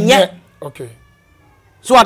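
A man's voice: a drawn-out, emphatic cry in the first half second, a pause of about a second, then speech starting again near the end.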